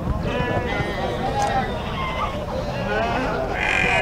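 Several Santa Inês hair sheep bleating, their calls overlapping.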